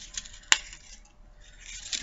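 A single sharp click about half a second in, from a thin metal chain necklace and its clasp being worked off a cardboard display card, with quiet handling sounds around it.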